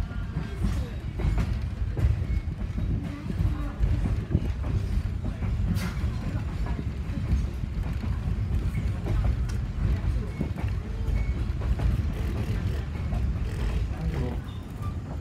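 Steady low rumble of a passenger railroad car running along the track, heard from inside the car, with faint voices in the background.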